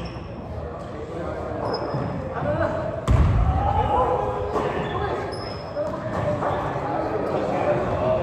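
Basketball bouncing on a hardwood gym floor, with a loud thud about three seconds in, under steady overlapping talk from players and spectators in the echoing gym. A few brief high squeaks come through.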